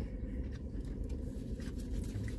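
Steady low hum inside a car with faint scattered clicks and rustles of fried chicken being chewed and takeout food being handled.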